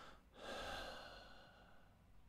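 A man's breath, drawn in once close to the microphone about half a second in and lasting about half a second; the rest is near silence.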